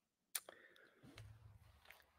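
Near silence: room tone with one faint sharp click about a third of a second in and a smaller one just after.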